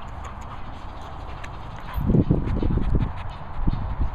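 A small dog panting hard close to the microphone, a loud run of quick breaths about halfway through and a shorter one near the end, over a low rumble of wind on the microphone.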